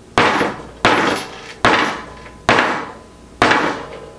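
A framing hammer striking the reinforced toe of a safety work shoe on a wooden table: five heavy blows in steady succession, a little under one a second, each a sharp knock that dies away quickly.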